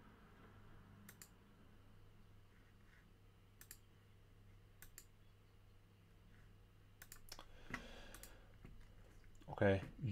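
Computer mouse clicks: a few single clicks spaced a second or more apart, then a quick run of several clicks about seven seconds in, over a faint steady low hum.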